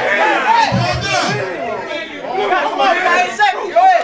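Crowd chatter: several men talking and calling out over one another, reacting to a battle-rap line.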